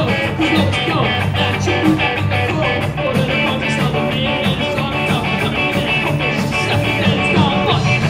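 A live rock band playing a fast ska-punk song on electric guitars, bass guitar and drums, loud and without a break.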